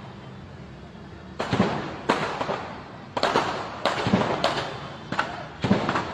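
Gunshots in a shootout: about a dozen sharp reports in irregular bursts, starting about a second and a half in, each followed by a short echo.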